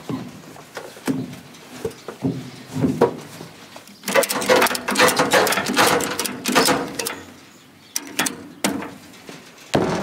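Ratchet tie-down strap being cranked tight, a quick run of ratchet clicks for about three seconds, starting about four seconds in. A few scattered knocks and handling clatter come before it, and a few more clicks come near the end.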